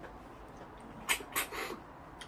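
Two short, sharp sucking sounds about a second in, with a softer one after: a person sucking the meat out of a cooked freshwater snail's shell.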